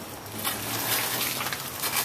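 Dry, dead oak leaves on a fallen branch rustling with soft crackles as they brush against the phone.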